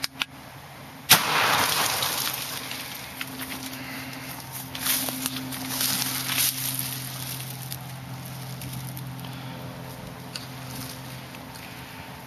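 A single gunshot about a second in, a sharp crack aimed at a coconut. It is followed by rustling and crackling of dry twigs and brush as someone walks through the undergrowth, over a steady low hum.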